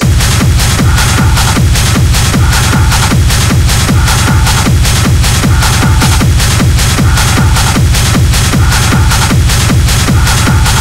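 Techno track playing in a DJ mix: a steady, even kick drum beat with hi-hats and a repeating synth figure. The full beat comes in right at the start after a brief quieter dip.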